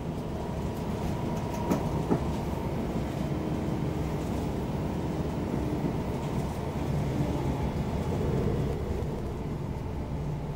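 Inside a Class 720 Aventra electric multiple unit running along the line: a steady rumble of wheels on rail and running noise, with two sharp clicks close together about two seconds in.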